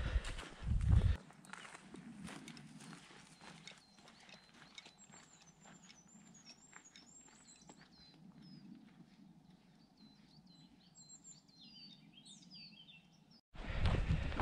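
Faint footsteps on a dirt and gravel forest trail, with a brief low rumble about a second in. From about five seconds in, a small songbird sings high, quick chirps.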